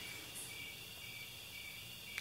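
Crickets chirring faintly and steadily in the background, a thin high-pitched drone.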